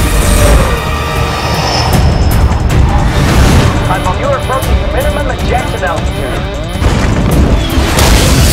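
Action-film soundtrack: orchestral score over the low rumble and booms of a diving fighter jet, with a radio voice warning of minimum ejection altitude about halfway through.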